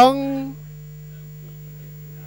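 A race commentator's drawn-out word trails off in the first half second, leaving a steady low electrical hum under the broadcast audio.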